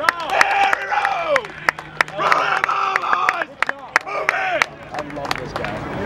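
Small sideline crowd of spectators and teammates cheering and yelling, with scattered rapid clapping, in celebration of a player's run.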